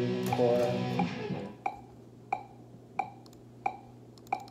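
Electric guitar playing sustained, bent notes that stop about a second and a half in. Over a low steady amp hum, a metronome keeps clicking about one and a half times a second.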